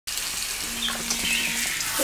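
Hair being washed with shampoo: a steady, wet hiss of water and lathering.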